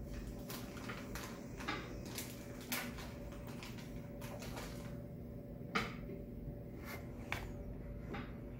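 Electric pottery wheel motor humming steadily as wet hands shape the spinning clay. Short scattered wet squelches and taps come from the hands on the clay, the sharpest about three and six seconds in.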